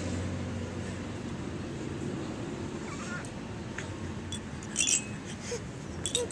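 A baby making a few short, faint cooing squeals over a steady low background, with a brief clinking rattle from the plush toy he holds about five seconds in.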